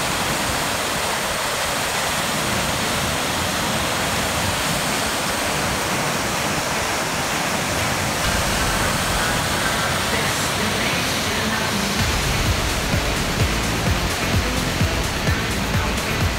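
Waterfall rushing over rocks: a steady, even hiss of falling water. Low, uneven rumbling joins in about three-quarters of the way through.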